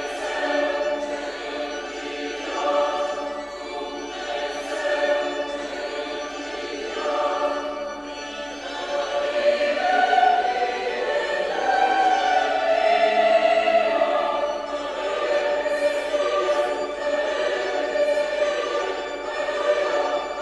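Choir singing a church hymn, many voices holding long notes together, growing louder about halfway through.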